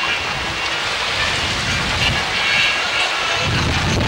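Low, irregular rumbling noise of wind buffeting an outdoor microphone, easing briefly between about two and three seconds in and then building again.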